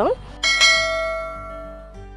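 A single edited-in bell-like chime, struck about half a second in and ringing as it fades away. It leads into the next segment of the video.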